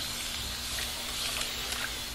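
Continuous water mister spray bottle spraying a steady fine mist of water onto hair in one unbroken hiss lasting about two seconds.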